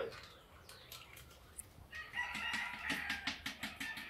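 A rooster crowing in the background, one held call starting about halfway in, over light crinkling and clicking from a plastic sachet being handled and emptied into a sprayer tank.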